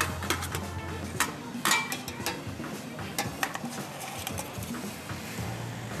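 Metal utensils clinking and scraping against a stainless steel pot and a metal serving tray as cooked potatoes and fish are lifted out and laid on the tray, in a string of irregular clinks.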